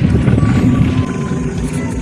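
Wind buffeting the action camera's microphone while riding a mountain bike along a dirt road: a loud, rough, low rumble.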